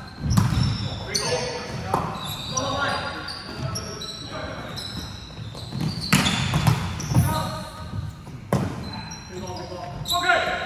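A volleyball rally on a wooden indoor court. Several sharp smacks of the ball being struck ring out and echo through the large hall, one of them an attack at the net about six seconds in. Players' sneakers squeak on the floor, and players shout calls.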